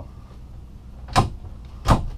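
Two short knocks about 0.7 s apart, a closet door in an RV bedroom being handled and shut.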